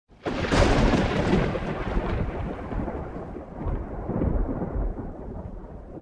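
A loud rumble like thunder that starts suddenly and slowly fades away.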